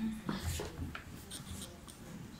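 Sheet music paper being handled on an upright piano's music stand: a few short rustles and clicks in the first second, then quieter.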